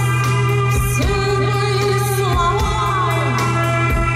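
Live folk-rock band: a woman sings a sliding, melismatic vocal line over a steady electric bass drone, guitar and drums with regular cymbal ticks.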